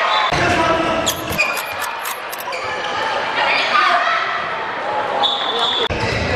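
Indoor handball play: a handball thumping on the court, with voices calling out and the echo of a large hall.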